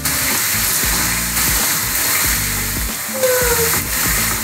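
Thin potato slices deep-frying in a pot of hot oil, a steady sizzle, with background music running underneath.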